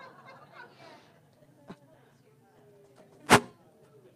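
Faint distant voices at first, then a small click and a single sharp knock about three seconds in.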